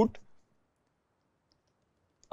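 Near silence after the end of a spoken word, with a faint click about one and a half seconds in, from a stylus tapping on a drawing tablet as dashes are drawn.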